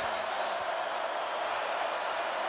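Steady crowd noise from a packed football stadium: an even wash of many voices with no single voice standing out.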